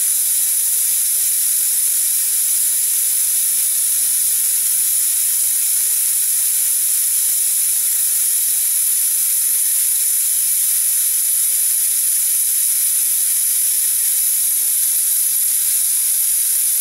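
Vacula air-powered vacuum brake bleeder hissing steadily as it pulls old brake fluid out through the front caliper's bleeder screw.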